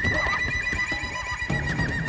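Dramatic television background score: a high held note that wavers rapidly in pitch like a trill, over a low rumbling drone.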